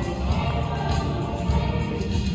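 A mixed-voice show choir singing in chorus over a bass-heavy musical accompaniment.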